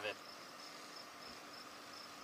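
Crickets trilling faintly: a thin, steady, high-pitched tone.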